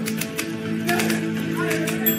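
Manual Olympia typewriter typed rapidly, its typebars striking the paper about seven times a second, over background music with sustained notes.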